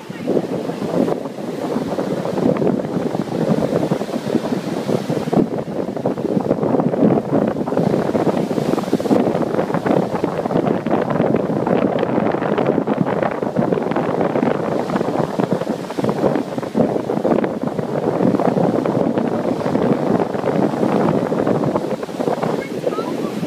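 Ocean surf breaking and foaming up the beach in a steady rush, with wind buffeting the microphone.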